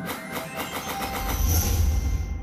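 Intro music for a title sequence: a fast, even run of percussive ticks, about six a second, over a deep rumble that swells near the end and then fades away.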